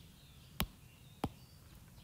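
Two short, sharp clicks about two thirds of a second apart over quiet room tone.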